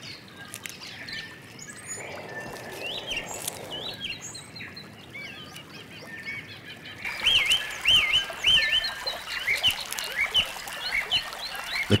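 Forest birds calling over a faint background hiss: scattered short chirps at first, then, from about halfway, a louder run of repeated rising-and-falling whistled calls.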